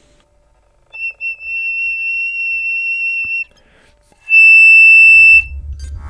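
Piccolo whistle tone: a thin, pure, slightly wavering high note held for about two and a half seconds. About a second after it stops, the same pitch is played with the normal piccolo tone, much louder and fuller, for about a second.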